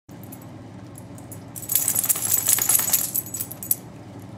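Dog's collar tags jingling in a dense burst that starts about a second and a half in and lasts about two seconds.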